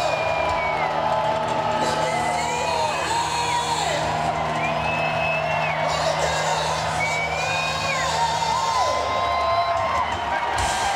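Live hard-rock band holding out a song's ending: a steady low note runs until near the end, under high held notes that bend up, hold and fall every couple of seconds. An arena crowd cheers and whoops throughout.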